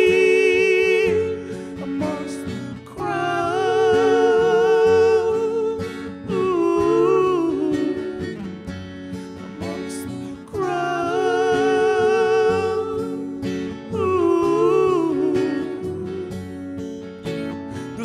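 Live acoustic folk music: two acoustic guitars played under a wordless sung melody. The voice holds long notes with vibrato in phrases of a few seconds each, with short breaks between them.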